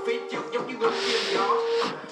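Trap song playing: a man rapping in Vietnamese over a beat with held synth notes, and a hissing swell through the middle.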